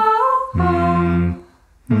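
A cappella humming in long held notes, one voice sliding up briefly at the start; it stops for a moment about a second and a half in before the next held note begins.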